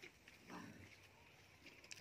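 Near silence: faint outdoor background hiss between remarks, with a faint short sound about half a second in.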